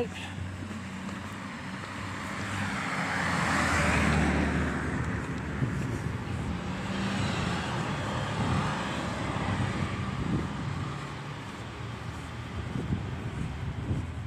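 A car driving past on the street, its tyre and engine noise swelling to a peak about four seconds in and then fading, with road traffic noise continuing after.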